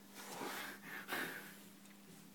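A person breathing hard, two heavy breaths close to the microphone, over a faint steady hum.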